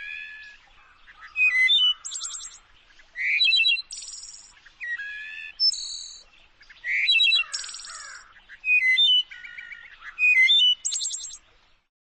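A songbird singing a string of varied, quick phrases mixed with high buzzy trills, about one every second or so, stopping near the end.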